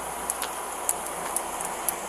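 Steady outdoor background noise with a few faint, sharp high-pitched ticks scattered through it.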